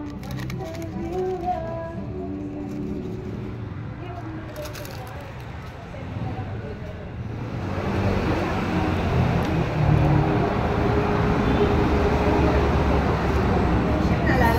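Background voices and music, then about eight seconds in a louder, steady rushing noise takes over.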